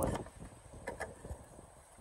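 A few faint plastic clicks about a second in, as a tail light bulb socket is handled and twisted into its housing, over low handling noise.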